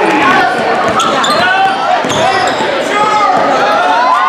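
Basketball game sounds on a hardwood gym floor: a ball bouncing and sneakers squeaking, with players and spectators calling out in a large, echoing hall.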